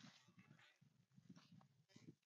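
Near silence, with faint, irregular rustling of tall grass and soft footsteps as someone walks through a field.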